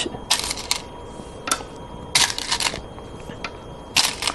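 Go stones clicking sharply onto a wooden Go board as moves are played out, in several short clusters of clicks about a second apart.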